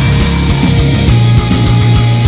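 Melodic funeral doom / death metal music: heavy, sustained low chords with drums, the chord changing about a second in.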